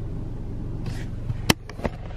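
Steady low rumble of a car's engine inside the cabin, with a sharp click about one and a half seconds in and a fainter one just after.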